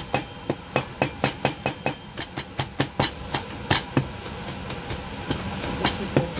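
Chinese cleaver chopping rapidly on a cutting board, mincing garlic, about four strokes a second. The chopping slackens about two-thirds through and picks up again near the end.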